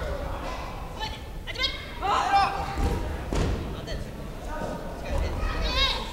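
Raised, high-pitched shouted voices with bending pitch, twice, echoing in a large gym hall, with a couple of short dull thuds between them.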